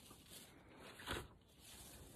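Near silence, with one brief faint sound a little after a second in.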